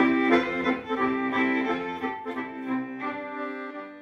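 Instrumental music of long held notes with a few note changes, fading out near the end.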